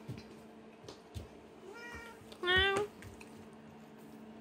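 Ginger tabby cat meowing twice, a faint short meow followed by a louder one.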